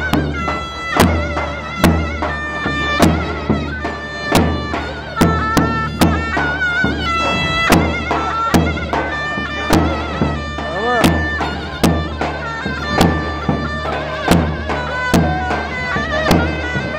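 A shrill folk reed pipe played live, a held and wavering melody with quick ornaments, over heavy drum beats in a steady dance rhythm.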